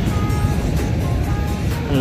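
Wind buffeting the microphone in a steady low rumble, under soft background music of short held notes.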